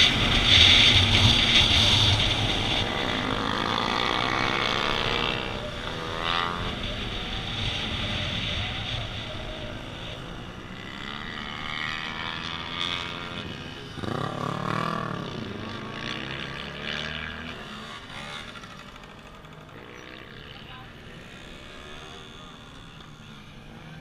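Onboard sound of a motorcycle on a track: strong wind rush on the microphone at first, with engine revs rising and falling twice, around six seconds and again around fourteen seconds in. Everything grows quieter as the bike slows down.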